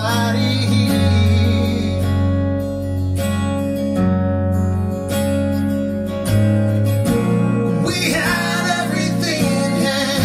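Live acoustic band music: two strummed acoustic guitars over sustained keyboard chords. A male voice comes in singing near the end.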